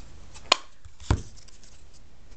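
Two sharp plastic clicks about half a second apart, the second with a dull knock on the tabletop, as a stamp ink pad case is handled and set down.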